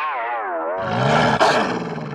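A cartoon woman's angry vocal growl: a wavering, falling tone that drops into a lower, rougher growl about a second in.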